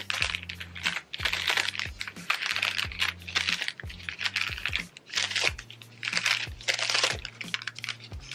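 Sheets of thin translucent paper rustling and crinkling as they are handled and laid down, in a run of short rustles about every half second, over soft background music.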